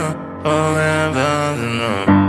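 Music: slow layered voices singing held chords in a chant-like refrain, with a brief break about half a second in before the chord resumes and shifts pitch.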